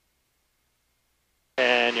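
Near silence, then a man's voice starts about one and a half seconds in.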